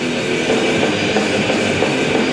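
Heavy metal band playing live on stage: distorted electric guitars and drums in a loud, dense, unbroken wall of sound.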